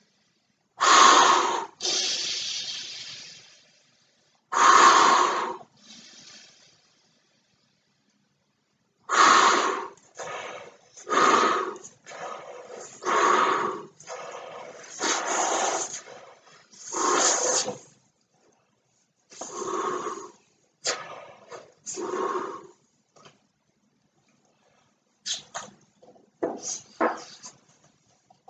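A man inflating a large latex weather balloon by mouth: loud gasping breaths drawn in and breaths blown into the balloon's neck, in an irregular run of bursts of a second or two, with a longer pause near the end.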